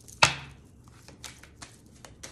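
A deck of tarot cards shuffled by hand: one sharp snap about a quarter second in, then a string of softer card flicks.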